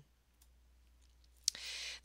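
Faint room tone, then a single sharp click about one and a half seconds in, followed at once by a half-second breath intake.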